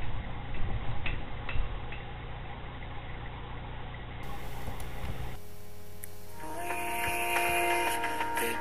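Bedding rustling, with a couple of soft clicks, over camcorder room noise with a low hum. About five seconds in the sound cuts off, and a second later music with held synth chords begins.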